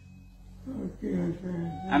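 A frail elderly woman's weak voice making short wordless sounds that waver up and down in pitch, starting about half a second in.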